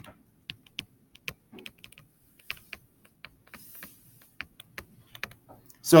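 Stylus tip tapping on a tablet screen during handwriting: a string of light, irregular clicks.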